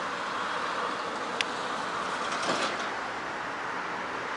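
Steady hum of road traffic passing, with one sharp click about a second and a half in.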